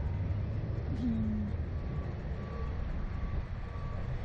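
Wind rumbling on the microphone of a camera mounted on a Slingshot reverse-bungee ride capsule as it swings high in the air. There is a short laugh about a second in and faint short beeps in the second half.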